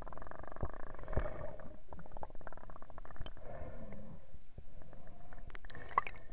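Underwater sound picked up by a camera submerged in a lake: a muffled rumbling and gurgling, with many small clicks and crackles scattered through it.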